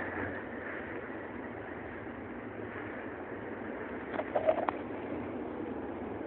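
Steady outdoor city background noise, with a few brief short sounds about four seconds in.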